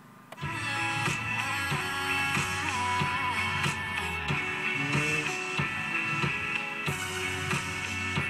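Music from an FM radio station playing through a car's stereo speakers, coming on about half a second in.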